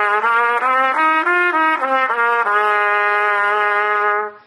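Trumpet playing the B-flat major pentatonic scale, stepping up in short separate notes and back down, then holding the last note, back at the starting pitch, for about a second and a half.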